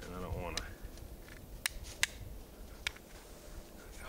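Flint struck against the back of a closed Opinel No. 8 carbon-steel knife blade: four sharp, separate clicks over a couple of seconds, each strike throwing sparks.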